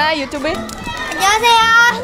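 A child's high voice calling out a greeting, the last part drawn out in a long held call near the end.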